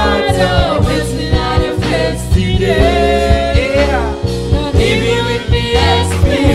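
Live gospel worship song: a man sings the lead into a handheld microphone over band accompaniment, with a steady bass line and a regular drum beat.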